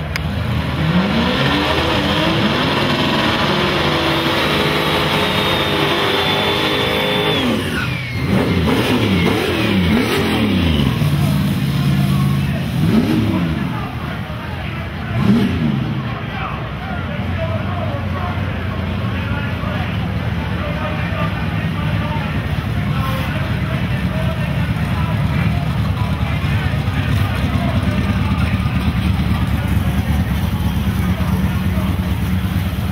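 Small-block V8 drag cars' engines revving hard, their pitch sweeping up and down repeatedly for the first fifteen seconds or so, then running steadier with a low rumble, over crowd chatter.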